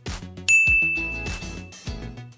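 A single bright chime ding about half a second in, ringing out and fading over about a second and a half, as a score sound effect. It plays over upbeat background music with a steady plucked beat.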